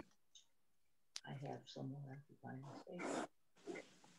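Faint, muffled voice speaking a few short, unclear phrases over a video-call audio feed, with a sharp click just over a second in.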